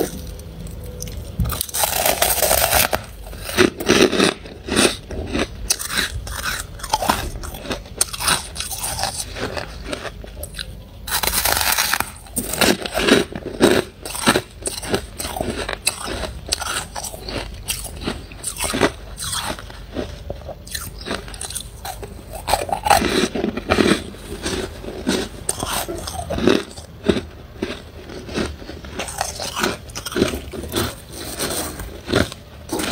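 Close-miked biting and chewing of soft, snow-like freezer frost: a dense run of crisp crunches throughout, broken by two longer, louder noisy bursts, about two and eleven seconds in.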